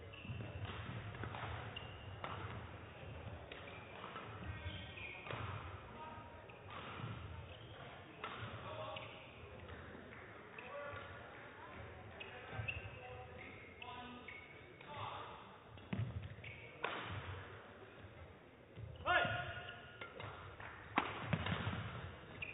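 A badminton rally in a sports hall: rackets striking the shuttlecock, with shoes squeaking and feet thudding on the court floor as the players move, in repeated short hits and squeaks that grow louder near the end.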